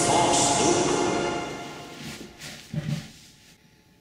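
A man's voice over sustained music, with a short louder burst near the end, all fading out about three and a half seconds in.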